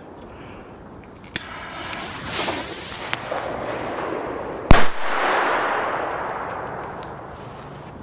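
A Zena Vuurwerk Match Cracker, a small friction-head firecracker with 1.2 g of black powder, goes off with one sharp, very loud bang about four and a half seconds in. A long echo fades for about three seconds after it. A faint click and a short hiss come before the bang.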